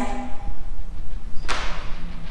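A single sharp thump about one and a half seconds in, over a low rumble.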